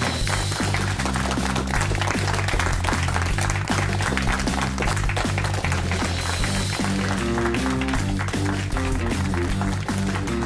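Television quiz show's closing theme music, with a steady beat and a moving bass line.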